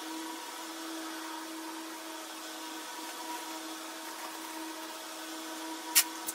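A steady mechanical hum with one constant low tone over a faint hiss, from an unseen motor or appliance; a single sharp click right at the end.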